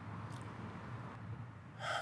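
Quiet room tone between sentences, with a faint breath about a third of a second in and an intake of breath near the end, just before speech resumes.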